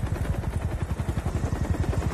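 Helicopter in flight: the rotor blades make a fast, even, low chop over the engine's running noise.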